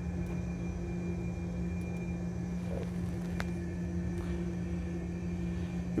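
Steady hum and low rumble of an Airbus A320 flight simulator cockpit, the simulated aircraft standing on the runway with engine 1 shut down and engine 2 still at idle. A single sharp click comes about three and a half seconds in.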